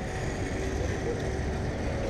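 Steady city-street background noise with a low rumble of passing traffic.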